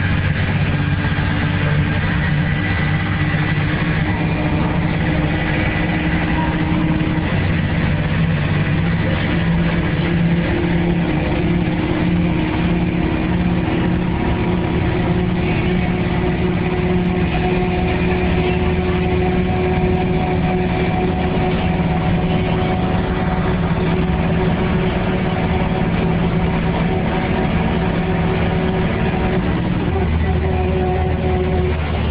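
Mercedes-Benz OHL1316 city bus's rear-mounted OM 366 inline-six diesel heard from inside the bus, pulling steadily under way through its Allison automatic gearbox. The engine note shifts slightly about seven seconds in and again near the end.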